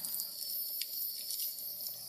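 Campfire crackling: a steady hiss with a few sharp pops.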